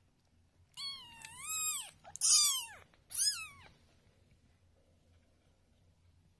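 One-week-old ragdoll kittens mewing: three high, wavering cries in quick succession, the first the longest and the second the loudest.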